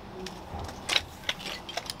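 A few light, irregular clicks and knocks over a faint low rumble, bunched around a second in and again near the end.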